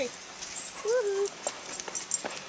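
A dog gives one short, rising-then-falling whine about a second in, over a few faint clicks of steps on stone stairs.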